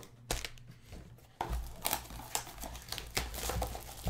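Foil trading-card pack crinkling as it is picked up and handled, with scattered short crackles.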